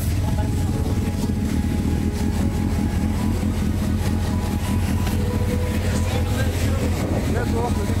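Sportbike engine idling steadily, a continuous low drone with faint voices in the background.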